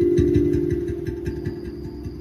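Rav Vast steel tongue drum notes ringing on and fading, over a quick run of soft low taps, about five a second, in a looped groove.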